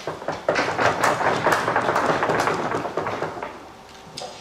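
Audience applauding: a dense patter of many hands clapping that starts about half a second in and dies away near the end.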